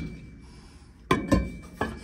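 Three short clinks and knocks, about a second in, after a quiet start: hard objects, probably metal parts, being handled or set down.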